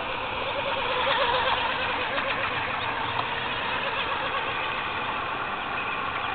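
Micro RC outrigger hydroplane running on the water at a distance: the high whine of its 10-gram electric outrunner motor and 20 mm metal prop, wavering in pitch as it runs, over a steady hiss.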